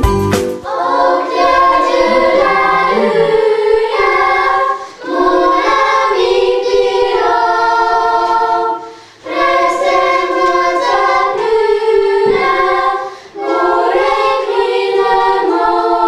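A children's choir singing a cappella, in four phrases with short breaks between them. A backing track with a beat cuts off just before the singing starts.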